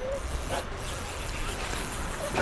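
A light spinning reel being cranked, winding in line against a freshly hooked bass, over a low steady rumble.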